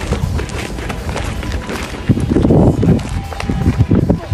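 Running footsteps on a dirt baseball infield as a batter runs to first base, with a dense patch of low rumble about halfway through.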